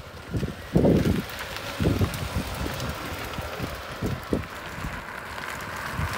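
Peugeot 407 SW estate's petrol engine running as the car drives slowly past, with wind buffeting the microphone in strong gusts, the loudest about a second and two seconds in.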